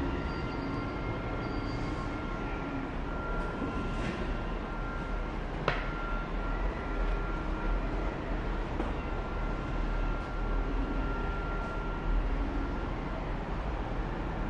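Steady machinery noise of a factory workshop: a low rumble with a thin high whine that comes and goes, and one sharp click about six seconds in.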